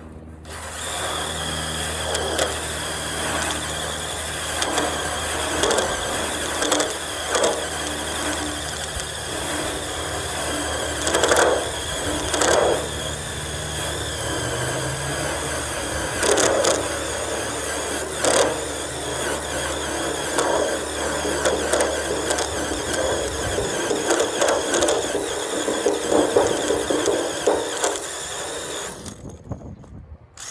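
Cordless drill spinning a paint-stripping attachment against the rusty steel of a car body panel, a continuous harsh scraping with the motor's hum underneath. It stops just before the end as the drill is lifted off.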